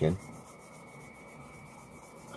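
Faint rubbing and handling of a stiff leather knife sheath under the fingers, with a thin steady high whine in the background.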